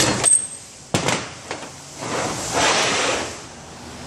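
Metal clicks and a sharp knock as steel U-joint parts are handled at a shop press, then a rushing, scraping noise lasting about a second.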